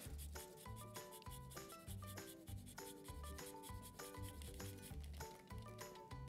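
Soft background music with a repeating bass line, under the faint rasping strokes of a lime being grated for zest.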